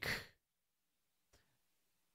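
A man's voice trailing off in a short breathy exhale right at the start, then near silence.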